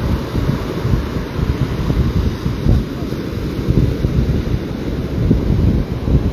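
Wind buffeting the microphone in uneven gusts over the steady wash of breaking surf.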